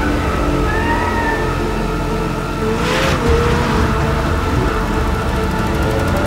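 McLaren 750S's twin-turbo V8 engine revving hard as the car drifts through a corner, its pitch rising and falling with the throttle, with a brief rushing swell about halfway through.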